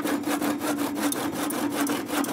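Handsaw cutting through a thin wooden pole in quick, even strokes, with a steady ringing tone underneath.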